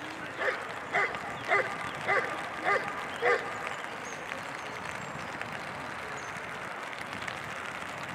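A dog barking six times in a quick, even series, about two barks a second, then stopping.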